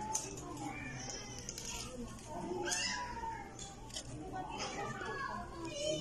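Indistinct background voices, some of them high-pitched, over the steady hum of a crowded indoor space.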